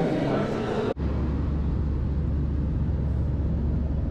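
Indistinct chatter and hubbub in an airport terminal, cut off suddenly about a second in by the steady low drone and hiss of an Airbus A320-family airliner cabin in flight.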